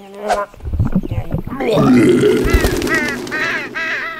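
A quick run of loud, short honking calls like geese or other farm fowl, over a low rumble that starts about half a second in.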